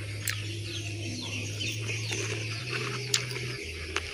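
Garden ambience with faint birds chirping, over a steady low hum, with two light clicks, one near the start and one about three seconds in.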